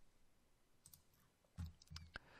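Near silence: room tone with a few faint clicks, about halfway through and again near the end.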